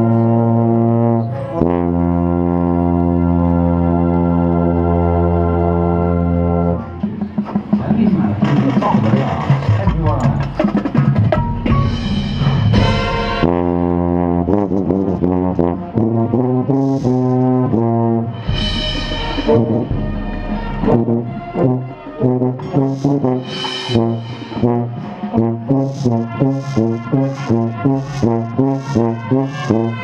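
Marching band brass and percussion playing loudly: a long held brass chord for the first several seconds, then a busier passage punctuated by crashes, ending in a steady pulsing rhythm of about two beats a second.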